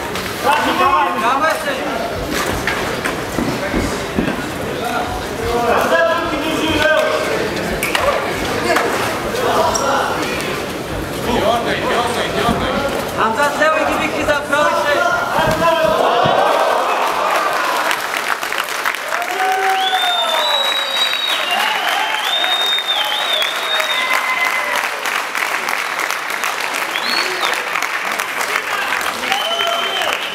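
A crowd of spectators at an MMA bout shouting and calling out during the fight. About halfway through the shouting gives way to steady applause and cheers, which the later announcement of a knockout win suggests greets the end of the bout.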